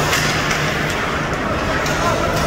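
Ice hockey rink noise during play: a steady hiss of skates on the ice over a low arena hum, with a few sharp clicks.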